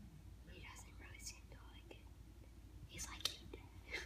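Faint whispering voices in two short stretches, with a single sharp click about three seconds in.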